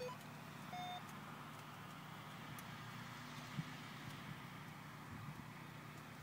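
Faint, steady hum of a running motor-vehicle engine, with a brief high tone just under a second in.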